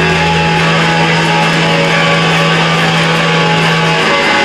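Distorted electric guitar from a live rock band ringing out a held chord over a steady low drone, before the drums come in. A deeper bass note under it drops out about half a second in.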